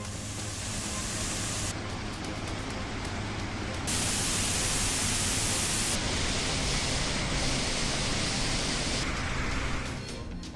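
Waterfalls on the Kaveri river in full spate, a dense, steady rush of falling and churning water, swollen by a rise in inflow. Its brightness changes abruptly about two, four, six and nine seconds in, like separate recordings spliced together, and it is loudest in the middle stretch.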